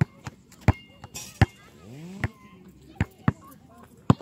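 Basketball bouncing on an outdoor asphalt court, about seven sharp, unevenly spaced thuds as it is dribbled and handled.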